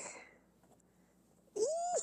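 Linen fabric rustling briefly as a sewn top is flipped over. Then a short, high-pitched vocal sound near the end, rising and then held.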